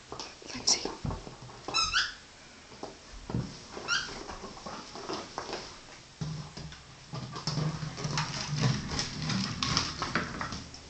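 Cairn terrier playing on a rug and hardwood floor: quick clicks and scrabbling of its claws, three short high squeaks in the first four seconds, and low play growling through the second half.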